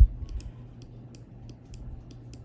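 A dull thump at the start, then several faint computer clicks as listing photos are clicked through, over a low steady hum.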